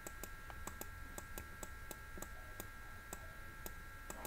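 Quick, unevenly spaced clicks of a computer mouse button, about five a second, as strokes of handwriting are drawn on screen. Underneath runs a faint steady electrical whine and hum.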